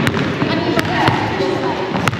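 Basketball bouncing on a hardwood gym floor: a few sharp, separate thuds that echo around the hall, with voices talking in the background.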